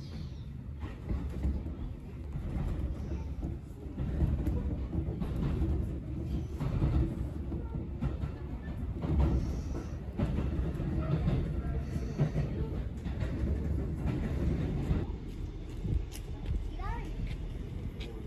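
A Fujikyu line electric train running, heard from inside the carriage: a steady low rumble with scattered knocks of the wheels over the track. A brief squeal comes near the end as it draws in beside the trains at the station.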